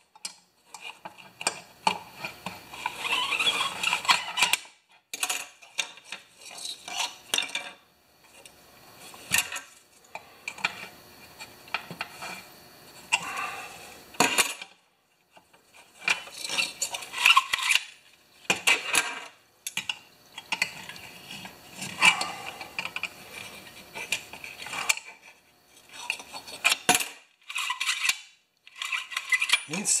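Honda HRA214 mower's recoil starter being pulled out and let wind back in over and over, each pull a run of metallic scraping and clicking a second or two long. It sounds terrible, which the owner puts down to the old recoil spring not having been oiled.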